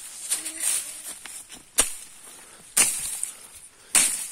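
Dry grass and brush rustling and crackling as it is trodden through and pushed aside, with sharp snaps about two seconds in, again near three seconds, and at the very end.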